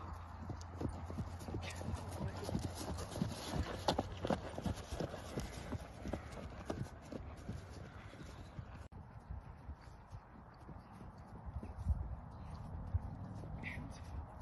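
Hoofbeats of a horse cantering and trotting on grass turf, a run of dull thuds. The sound breaks off suddenly about nine seconds in, and stronger hoofbeats come near the end as the horse passes close.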